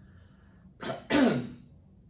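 A man clearing his throat about a second in: a short rasp, then a louder one whose pitch falls.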